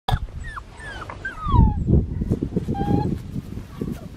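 Australian Shepherd puppy whining: a run of short high whines that fall in pitch, one longer falling whine about a second and a half in, and a brief one near the end. Low thumps and rumble run underneath, loudest in the middle.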